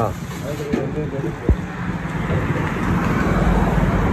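Street traffic noise with a steady low engine hum that grows louder in the second half, faint background voices, and a single brief thump about a second and a half in.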